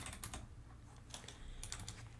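Faint typing on a computer keyboard: small clusters of quick keystrokes at the start, about a second in, and again near the end, with quiet gaps between.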